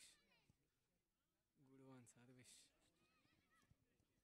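Faint shouted calls from voices across the pitch, one right at the start and another about two seconds in, with very little sound between.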